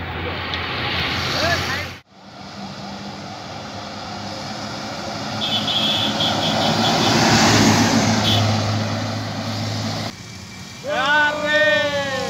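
An intercity coach passing close by on the highway: engine and tyre noise build to a peak midway, then trail off with a steady low engine hum. Near the end come several loud, excited shouts.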